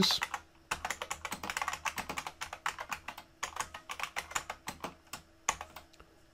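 Typing on a computer keyboard: a quick run of keystrokes that thins to a few single key presses near the end.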